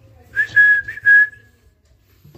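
A person whistling one steady high note in three or four short pulses lasting about a second altogether, the kind of whistle used to call a nestling to open its beak for feeding.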